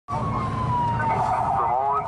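A siren whose pitch falls slowly and steadily, over a low rumble, with a voice coming in near the end.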